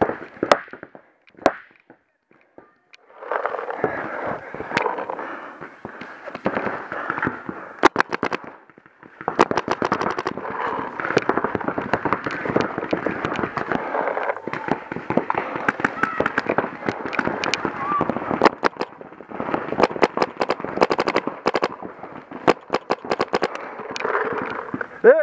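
Paintball markers firing, single pops and rapid strings of shots, with the thickest volleys about 8 and 10 seconds in and again near the end. Players shout across the field underneath.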